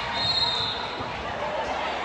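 A basketball being dribbled on a hardwood gym floor amid the chatter of a crowd in a large gym, with a high squeak in the first half-second.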